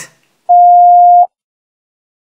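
A single steady electronic beep, one mid-pitched tone lasting under a second, starting about half a second in: the cue tone for the listener to repeat the spoken sentence.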